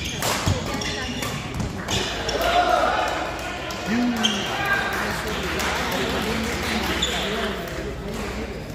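Badminton racket hitting the shuttlecock: a sharp smash right at the start and a couple more crisp hits in the first two seconds, echoing in a large hall. After the rally, voices of players and spectators carry on.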